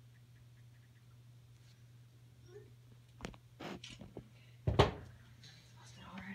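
A faint steady hum, then a short run of rustles and knocks starting about three seconds in, the loudest a sharp bump just before the five-second mark.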